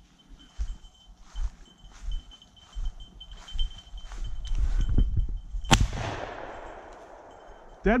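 Footsteps through dry leaves and brush, then a single shotgun shot about three quarters of the way through, its report trailing away for about two seconds: the shot at a woodcock that brings the bird down.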